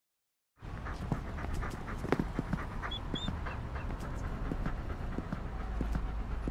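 A husky panting as it walks, with many light ticks over a low steady hum; it all starts abruptly just under a second in.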